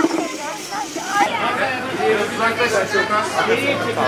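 A group of children chattering, many voices overlapping in a lively babble. A steady low hum runs underneath from about a second in.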